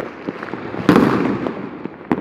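Fireworks and firecrackers going off: a scatter of sharp cracks, with one loud bang a little under a second in that fades out over about half a second.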